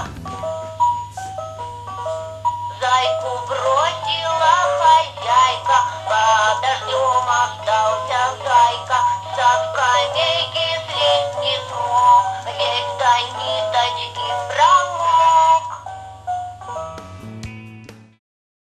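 Talking plush teddy bear toy playing a children's song through its small speaker: a simple stepped electronic melody, then a high-pitched voice singing over it, with the bare melody back near the end before it stops. A steady low hum runs under it all.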